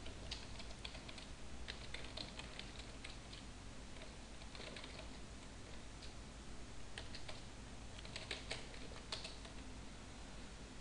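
Computer keyboard being typed on: faint keystrokes in short, irregular bursts with pauses between them.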